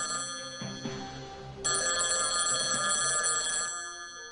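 Telephone ringing, unanswered, with a bell-like ring: one ring ends about half a second in and the next runs from about one and a half seconds in until shortly before the end.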